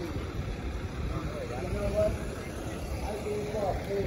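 Busy street ambience: nearby passers-by talking indistinctly over a steady low rumble.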